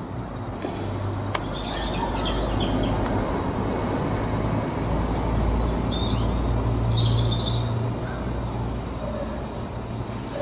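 Low background rumble that builds over several seconds and then fades, with a few short high chirps over it.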